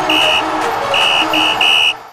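TV sports-show intro sting: a music bed with four short, steady, high beeping tones, one near the start and three in quick succession about a second in. It cuts off suddenly at the end.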